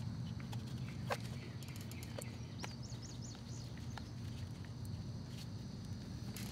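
Light clicks and taps as a hand pump is screwed onto a plastic gear-oil bottle, the sharpest about a second in, over a steady low hum. A bird chirps a quick run of about five short rising notes about halfway through.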